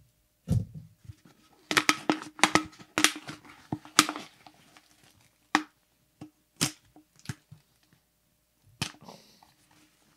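Wrapping being torn and crinkled off a beer can by hand: a string of sharp crackles and short rips, busiest in the first three seconds, with a low thump about half a second in.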